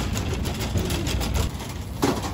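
Metal shopping cart rolling over a store floor, its wheels and frame giving a steady rattle and rumble.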